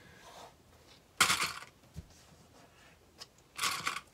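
Small plastic sewing clips being fastened onto the edges of layered cotton fabric: two short scraping rustles, one a little past a second in and one near the end, with a faint click between them.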